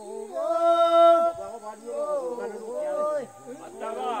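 Korowai song sung after the hunt: voices chanting, holding one long steady note for about a second near the start, then several voices overlapping with pitches that slide up and down.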